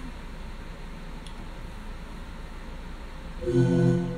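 Electronic keyboard: low hiss for about three and a half seconds, then a held note sounds and carries on.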